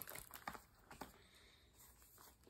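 Very faint handling of a hardcover picture book being closed and lowered: a few soft taps and rustles in the first second, then near silence.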